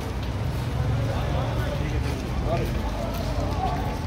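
Indistinct voices of several men talking, over a steady low rumble.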